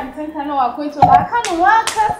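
A woman talking animatedly, with one sharp clap about a second in.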